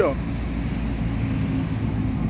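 Road traffic: a bus driving past on the highway, heard as a steady low engine and tyre rumble.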